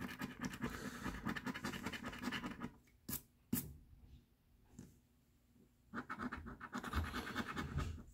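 A coin scraping the coating off a lottery scratch-off ticket in quick, rapid strokes. It stops after about three seconds with two light clicks, goes quiet for a couple of seconds, then starts scraping again.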